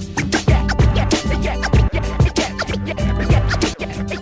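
Turntable scratching: a vinyl record pushed back and forth by hand in quick strokes, each a short sweep up or down in pitch, over a hip-hop beat that hits about twice a second.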